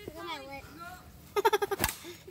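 A child laughs, and near the end a plastic Wiffle ball bat strikes the ball once with a sharp crack.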